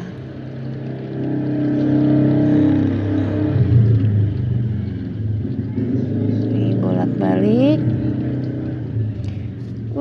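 Battered tempeh deep-frying in a wok of hot oil with a steady sizzle, under the louder steady hum of a motor running nearby, whose pitch rises sharply about seven seconds in.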